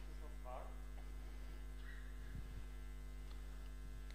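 Steady low electrical mains hum, with a faint voice briefly audible about half a second in.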